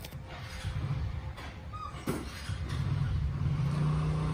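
A low engine hum that grows louder over the second half, with a single sharp click about two seconds in.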